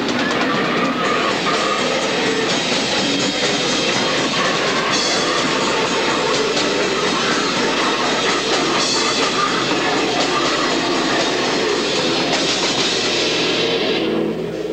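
A live heavy metal band playing loud, with distorted electric guitars and drums run together into one dense wall of sound.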